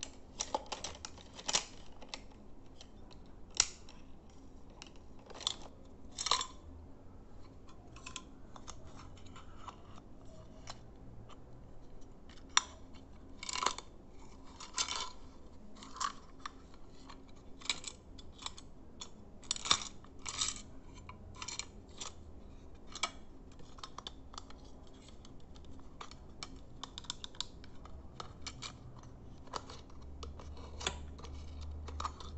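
Irregular clicks and taps from fingers handling a small flag-printed cube, a few of them louder than the rest.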